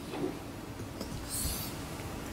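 Quiet room noise with a brief faint rustle about one and a half seconds in.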